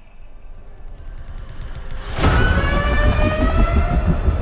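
A low rumble, a sudden loud hit about halfway through, then a siren-like wail that slowly rises in pitch.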